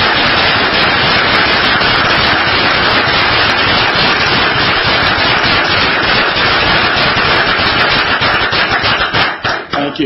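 Audience applauding, a dense even clatter of many hands that thins into scattered separate claps near the end.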